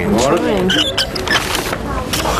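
People talking, over a steady low background rumble, with a few faint clicks.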